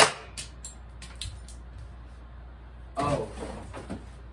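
A BB gun fires a single shot, one sharp crack as the BB strikes a cardboard box, followed by a few faint handling clicks.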